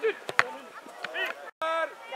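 A football being kicked: one sharp thud about half a second in, among players' shouts. The sound drops out for a moment near the end.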